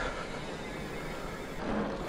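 Mountain bike rolling along asphalt: steady knobby-tyre and wind noise, swelling slightly near the end.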